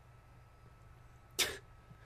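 A person coughs once, briefly, about a second and a half in, over faint room noise.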